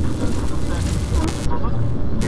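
Title-sequence sound design: a heavy, steady low rumble under a noisy hiss, with a few short chirping blips. The high hiss cuts out briefly about a second and a half in.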